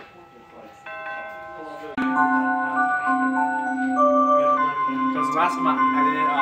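A Rhythm musical wall clock plays an electronic melody through its speaker. Soft held notes begin about a second in. About two seconds in, a louder tune of sustained, stepping notes starts over a steady low note.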